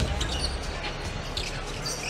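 A basketball being dribbled on a hardwood court over the steady murmur of an arena crowd, with faint voices in the background.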